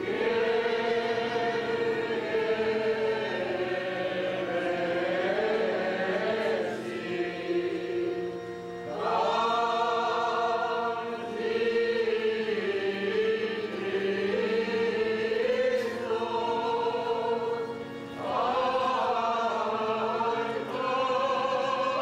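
Choir chanting an Armenian Church liturgical hymn in long held phrases. The singing dips between phrases a little before halfway and again near 18 seconds, each new phrase rising in at its start.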